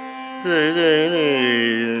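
Carnatic male vocal in raga Shuddha Dhanyasi over a steady tanpura drone. About half a second in, the voice enters on a held note, wavering with gamaka ornaments and then sliding down.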